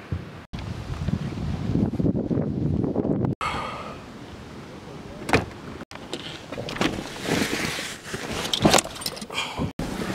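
Handling noise and sharp clicks and knocks inside a car, in several short clips that cut off abruptly.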